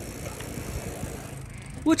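Steady low rumble of wind and tyre noise from riding bicycles along a paved road.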